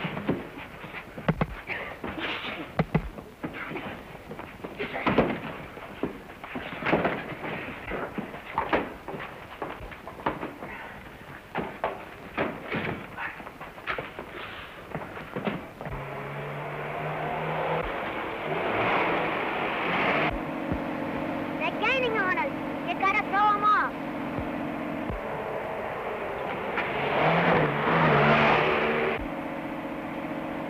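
A fistfight on an old film soundtrack: a string of sharp punches, thuds and crashes for about the first half. Then a 1930s open touring car's engine running steadily as it speeds along, swelling louder twice, with high wavering squeals near the middle.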